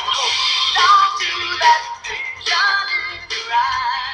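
A voice singing with vibrato over a music backing track, in short phrases with brief breaks between them.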